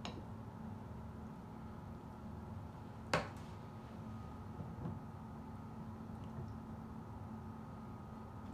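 Faint steady room hum with one sharp knock about three seconds in, a plastic slotted spoon knocking against a ceramic plate while loose ground beef is scooped onto a bun.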